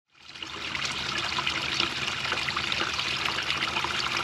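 Small backyard pond waterfall trickling steadily over stones into the pond, fading up from silence in the first half-second.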